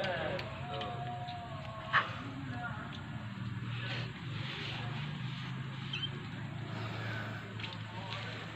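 Stray kittens meowing, with a drawn-out meow near the start, over a steady low hum. A single sharp knock about two seconds in.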